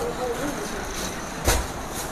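Handling noise as plastic-wrapped garment packets and a cardboard carton are moved about, with a single thump about one and a half seconds in. Faint voices in the background.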